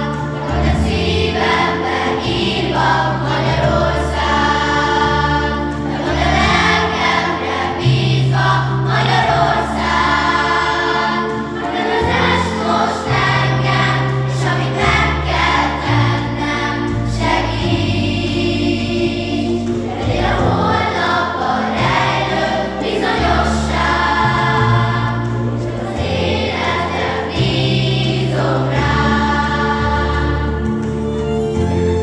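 Children's choir singing together, with held low accompaniment notes under the voices.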